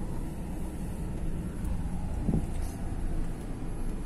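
Steady low rumble of a car's engine and tyres heard from inside the cabin as it drives slowly, with one short low sound about two seconds in.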